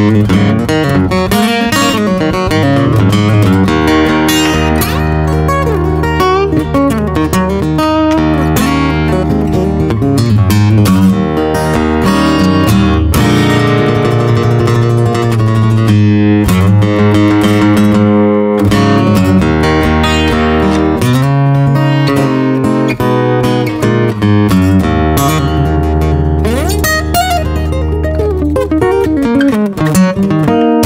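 Cort Core Series acoustic guitar, an OM-body cutaway with solid mahogany top, back and sides, picked by hand without pause, with low bass notes ringing under the melody. It has a responsive, balanced tone, not too bass-heavy and not shrill in the treble, darker than a spruce top.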